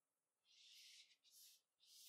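Faint, short rustling swishes of thin paracord sliding through the slots of a foam kumihimo disc and brushing over the disc and tabletop as the strands are set in place, a few separate strokes.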